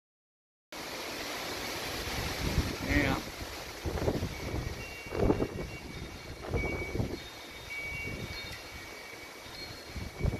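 Strong storm wind gusting through trees and buffeting the microphone, coming in after a brief silence, with a low rumble from each gust about once a second. Faint, steady high ringing tones sit under the wind.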